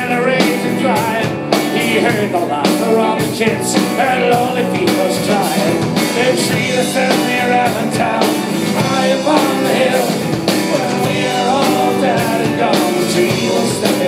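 Folk-rock band playing live at full volume: electric guitar, bass, drums and keyboard, with vocals over the top.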